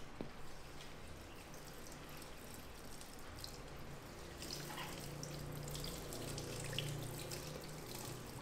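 Water from a handheld shower sprayer running over hair into a salon shampoo basin, with small drips and splashes.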